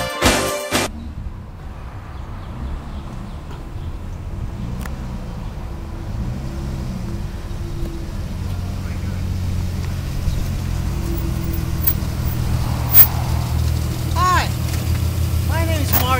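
2000 Plymouth Prowler's 3.5-litre V6 running as the car rolls slowly closer, a steady low rumble that grows gradually louder. Intro music cuts off about a second in.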